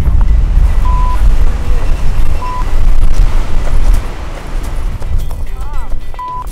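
Strong wind buffeting the microphone: a loud, rough low rumble throughout. Two short beeps at the same pitch cut in about a second and two and a half seconds in.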